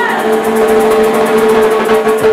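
Chimaychi band music with a steady held note and no drumbeat under it.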